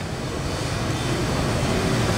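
Steady background hiss and rumble of the meeting room, with no speech, rising slightly toward the end.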